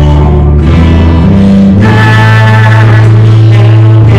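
Contemporary worship song with guitar and singing, its chords held for a second or two at a time, with a steady bass underneath.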